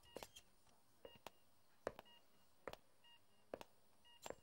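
Hospital patient monitor beeping softly about once a second, with a few faint sharp clicks scattered between the beeps.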